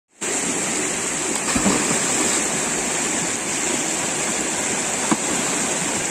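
Rushing water of a shallow, fast river running over rocks in rapids, a steady noise throughout. Two brief, sharper sounds stand out, one about a second and a half in and another near five seconds.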